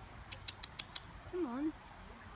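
European robin giving a quick run of five sharp 'tic' calls, about six a second. A little later comes a short low call that falls and then rises in pitch.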